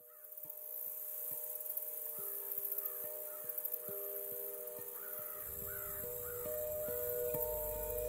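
Crows cawing in a string of calls over a slow score of long held notes that fades in at the start, with a steady high hiss behind it and a low rumble joining about five seconds in.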